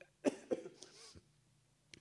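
A man coughs once, sharply, about a quarter second in, trailing off into quieter throat sounds over the next second.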